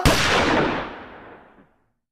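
A single gunshot: one sharp crack followed by a long echoing tail that dies away over about a second and a half.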